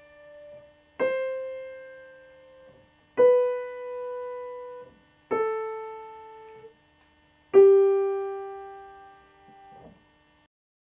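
Piano played one note at a time with the right hand: four single notes about two seconds apart, each struck and held until it fades, each a step lower than the one before.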